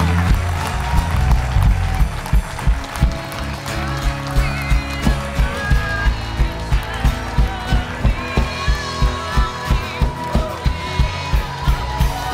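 Live church praise music with a steady drum beat, about two and a half beats a second, under sustained keyboard or vocal lines.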